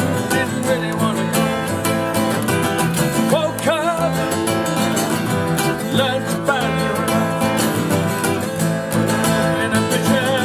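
Several acoustic guitars strummed and picked together through a song, with a man singing over them.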